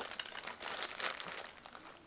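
Clear plastic zip-top bags holding GoPro accessories crinkling as they are picked up and shuffled in a carrying case, a busy crackle that eases off near the end.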